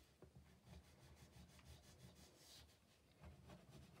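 Near silence, with faint rubbing as the tip of a liquid glue bottle is drawn along a die-cut cardstock curtain piece lying on a craft mat.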